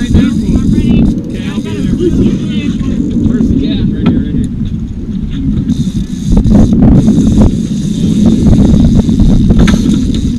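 Steady low rumble of a boat's outboard motor mixed with wind on the microphone, growing louder about six seconds in, with indistinct voices and a few sharp knocks.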